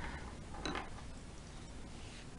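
Faint handling noise from hands working chunky yarn on a size 9 crochet hook, with one soft, brief rustle a little under a second in.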